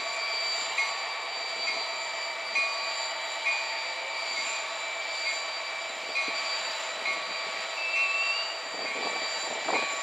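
Freight train led by a Union Pacific diesel locomotive rolling past at low speed, pulling out of the yard. A steady high-pitched whine and squeal runs throughout, with a light click about once a second.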